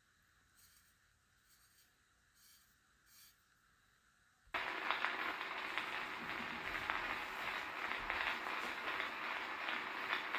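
Edison Blue Amberol cylinder record starting to play on a horn phonograph. After a few seconds of near quiet with faint handling sounds, a steady hiss and crackle of record surface noise begins abruptly about halfway through and carries on.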